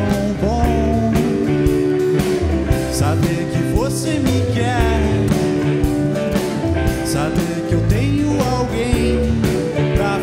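A small band plays an acoustic pop-blues song: strummed acoustic guitar, electric bass and a drum kit, with a male voice singing the melody.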